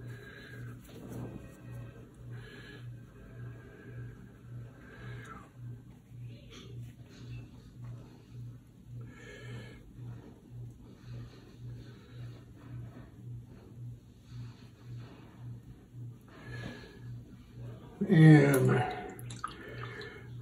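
Faint brushwork: a watercolour brush dabbing paint in a palette and stroking across rough watercolour paper, over a low hum that pulses a little more than twice a second.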